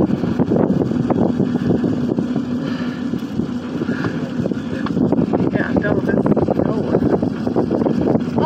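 Steady rushing, gusty noise inside a moving aerial tram cabin as it travels along its cables, with a faint low hum in the first few seconds.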